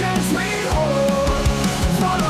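Rock song in an instrumental passage without vocals: steady drum hits under sustained guitar and a short melodic line.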